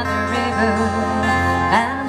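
Two acoustic guitars playing a country song through a stage PA, melodic lead fills over strummed chords with a held low bass note.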